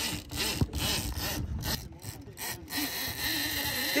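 Heavy conventional fishing reel on a bent butt rod giving line against a locked-down drag as a big hooked fish runs, an uneven rasping sound.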